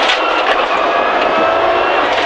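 Subaru WRX STI rally car's turbocharged flat-four engine running hard at steady high revs, its pitch holding almost level, over road and wind noise.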